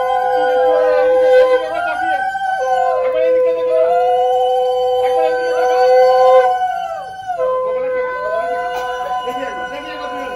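Two conch shells (shankha) blown together in long held notes, one on a steady lower tone and the other arching up and down in pitch. The lower note breaks off briefly for breath about two seconds in and again about seven seconds in.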